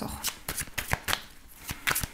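A deck of oracle cards being shuffled by hand, the cards flicking and slapping against each other in a quick, irregular run of sharp clicks.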